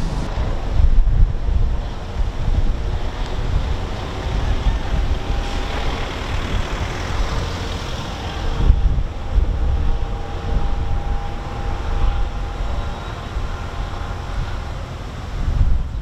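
Wind rumbling on the microphone over a steady low drone of engines, with a few faint steady hums.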